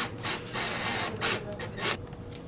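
Cordless drill driving a screw into the wall in several short bursts.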